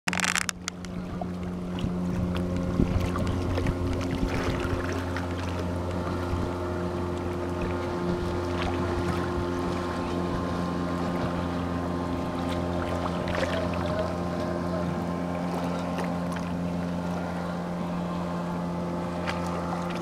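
A motorboat's engine droning steadily at one unchanging pitch across open water, with a light wash of small waves.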